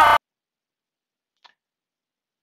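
Near silence: shouting spectators cut off abruptly just after the start, then a single faint click about one and a half seconds in.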